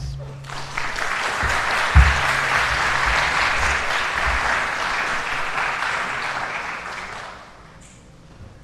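An audience applauding in a hall. The clapping swells in about half a second in, holds steady, and dies away near the end. A low thump about two seconds in.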